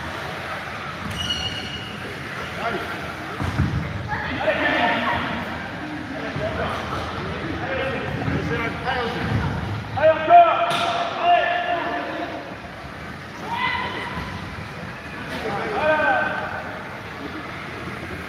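Voices calling out across a large sports hall during powerchair football play, with a few thuds of the ball being struck by the chairs' foot guards.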